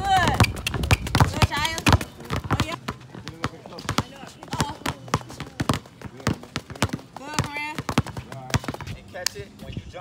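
Basketballs dribbled on an outdoor hard court, a run of sharp bounces, denser in the first two seconds, mixed with sneaker steps on the asphalt, with voices calling out now and then.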